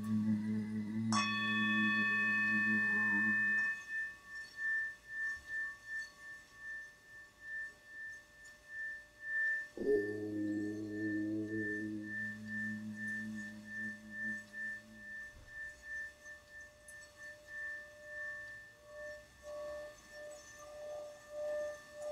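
Tibetan singing bowl struck about a second in, its high ringing tone pulsing slowly as it fades over many seconds. Under it a low, steady, humming drone breaks off a few seconds in and returns about ten seconds in.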